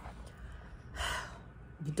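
A woman's short audible breath, a soft sigh about a second in, in a pause between spoken phrases.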